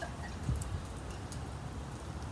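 Beer being poured from a can into a glass, with a wood fire crackling faintly in a fire pit over a steady low rumble.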